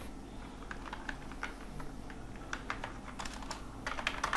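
Typing on a computer keyboard: irregular keystroke clicks, coming more often in the second half.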